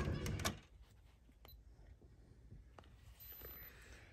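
Brass lever door handle turned and the latch clicking as a door is opened: a few sharp clicks in the first half second, then quiet with a couple of faint ticks.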